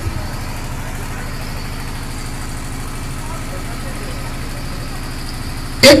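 An engine running steadily at idle, a constant low drone with a fast, even pulse. A man's amplified voice comes back in just before the end.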